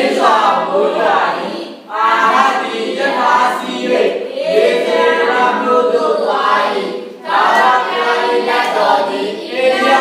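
A church congregation singing a hymn together in long sung phrases, with brief breaks for breath about two seconds in and again about seven seconds in.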